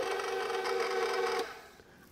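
KitchenAid Professional 5 Plus stand mixer running with its flat beater turning through dry flour and sugar, a steady motor hum. It switches off about one and a half seconds in and winds down to quiet.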